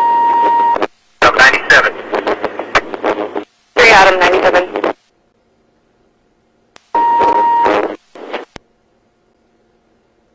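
Police radio traffic: a steady beep opens a transmission, followed by a few seconds of radio voice. After a quiet gap a second beep and a short transmission follow, about seven seconds in.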